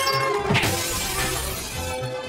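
A crash with shattering glass, a sharp hit followed about half a second in by a loud breaking burst, over a song playing in the background.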